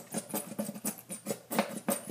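Fingertips rubbing thick dish soap into the sticky surface of a Cricut cutting mat. The wet soap gives quick, irregular squishes, about six a second. The mat's adhesive is being soaked in soap to loosen it for cleaning.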